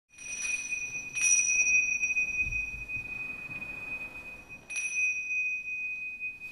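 A small high-pitched metal chime struck three times, twice in quick succession at the start and once more past the middle. Each strike rings on for seconds at the same single clear pitch.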